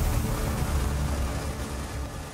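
Ringing tail of a logo sting: a low rumble with a hiss above it, fading out steadily.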